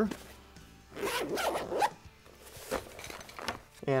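Zipper of a soft fabric tool pouch being pulled open in one long zip about a second in, followed by fainter rubbing of the fabric as the pouch is laid open.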